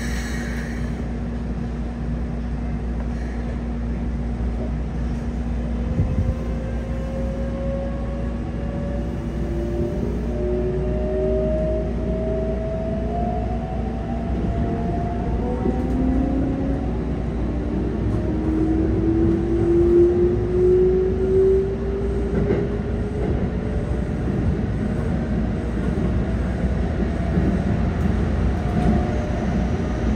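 Mitsubishi GTO-thyristor VVVF inverter and traction motors of a Keikyu 600 series train, heard from inside the car as it accelerates: a whine of several tones that climbs slowly in pitch in steps, over a steady hum and the low rumble of the running gear.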